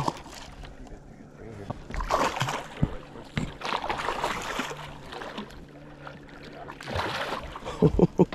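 A hooked largemouth bass thrashing and splashing at the surface beside the boat as it is fought in, in short bursts about two, four and seven seconds in.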